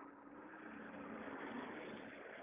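Faint passing traffic: a truck going by at a distance, its noise swelling and then easing off.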